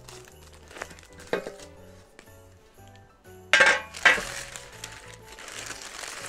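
Soft background music, and about three and a half seconds in, two loud clanks from a metal baking tray as it is lifted off the turned-out cake and set aside.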